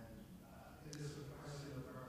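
Faint, distant speech: an audience member at the back of the room asking a question, picked up far from the microphone.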